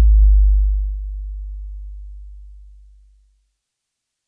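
A deep electronic bass tone, the last note of the song, holding one low pitch and slowly fading away until it dies out a little over three seconds in.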